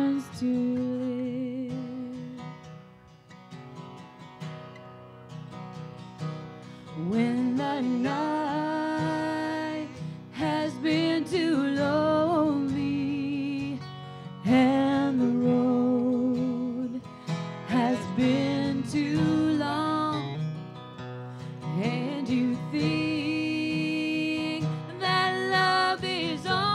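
A woman singing a slow ballad into a microphone over a strummed acoustic guitar, her sung phrases separated by short pauses.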